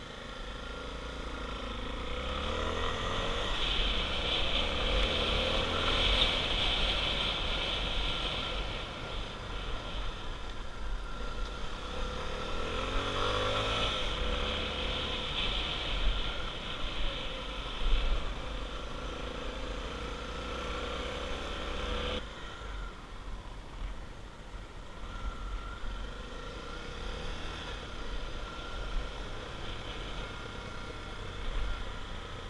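Dual-sport motorcycle running along a rough gravel track, its engine note climbing in pitch under throttle twice. A couple of sharp knocks from the rocky surface come in the middle.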